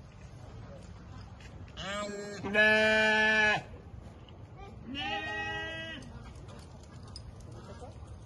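Sheep bleating: a rising call about two seconds in runs into a long, loud, steady bleat, then a shorter, quieter bleat follows about five seconds in.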